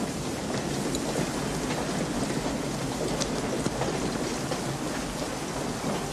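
Rain falling steadily.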